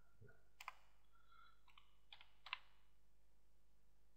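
A few faint computer keyboard keystrokes, spaced unevenly over a couple of seconds, over near-silent room tone.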